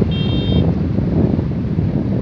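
Wind buffeting the microphone: a loud, ragged low rumble throughout. A brief high steady tone sounds about a tenth of a second in and stops about half a second later.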